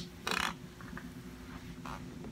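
Quiet room tone with a low steady hum and a short rustle about a quarter of a second in, then a few faint small handling sounds. No guitar notes are played.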